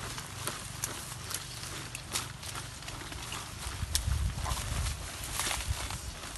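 Scraping, knocking and rustling from digging by hand in soil and dry leaf litter, with scattered sharp knocks and a low rumble about four seconds in.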